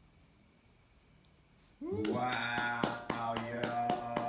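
Near silence for about two seconds, then a person cheering with a long held, rising "woo" and hand clapping, starting suddenly.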